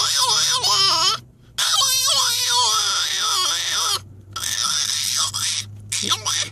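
A French bulldog crying loudly from inside a zipped pet carrier in three long, wavering wails, its protest at being shut in for a car ride.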